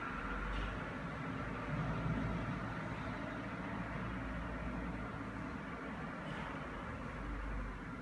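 Steady low hum and faint hiss of room background noise, with no distinct event.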